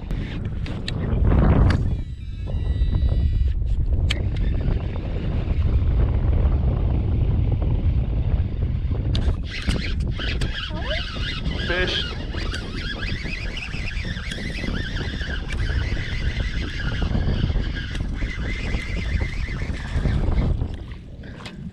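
Wind rumbling steadily on the microphone while a baitcasting reel is cranked in, with water splashing near the end as a hooked bass thrashes at the surface.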